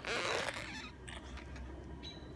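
A child's short, rasping breath-and-mouth noise made right against a phone's microphone, lasting about half a second at the start, followed by faint handling clicks.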